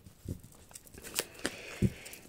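A deck of tarot cards being handled and shuffled: a few light clicks as the cards knock and slide against each other, with a faint rustle of card stock in the second half.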